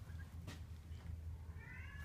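A cat gives a short, faint meow near the end, slightly rising in pitch. A soft click comes about half a second in.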